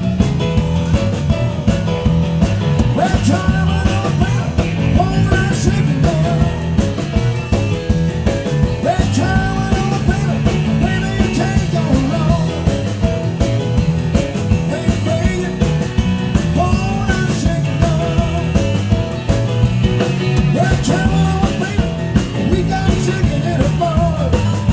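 Live rock and roll band playing: piano, drum kit, electric guitar and electric bass, with a male lead voice singing at the piano.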